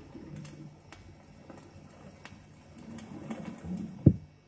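Vinyl record playing past the end of the music: quiet surface noise with a low hum and scattered sharp clicks, picked up by a stereo cartridge tilted 45° to read the mono groove. A low rumble swells near the end.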